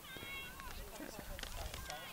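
Faint, distant voices of field hockey players and spectators calling out across the field, in short drawn-out shouts, with a few light knocks.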